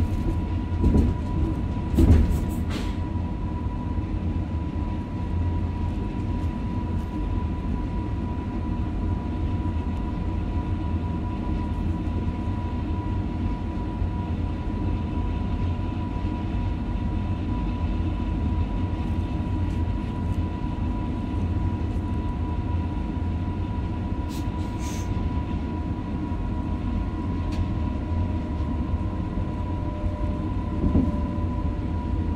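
Passenger train running along the track, heard from the driver's cab: a steady low rumble with a steady high-pitched whine over it. A few sharp knocks come near the start and again about 25 seconds in.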